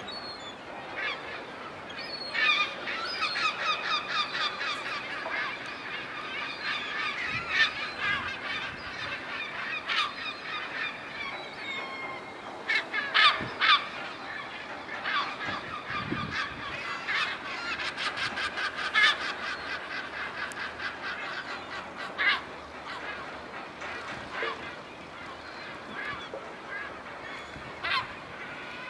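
A flock of gulls calling over the sea, many voices overlapping in quick, repeated pitched cries, with a few louder, sharper calls midway.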